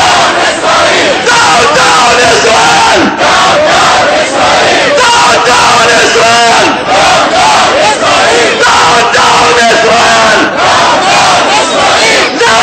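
Large crowd of demonstrators shouting slogans together, a loud rhythmic chant that repeats over and over.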